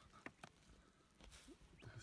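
Near silence, broken by two faint short clicks about a quarter and half a second in.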